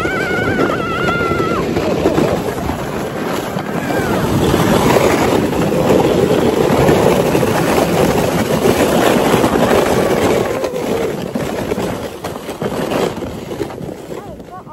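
Sled sliding down a snowy hill: a loud, steady rush of the sled scraping over snow, with air rushing past, that builds for several seconds and fades near the end as the ride slows. A high-pitched voice squeals briefly at the start.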